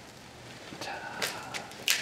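Faint footsteps and two sharp clicks, about a second in and near the end, as a person walks off carrying a skillet.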